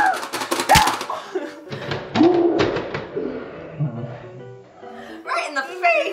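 Rapid clicking of the Pie Face Showdown game's plastic buttons, then one loud thunk less than a second in as the spring-loaded hand launches. Girls' squeals and laughter follow, over background music.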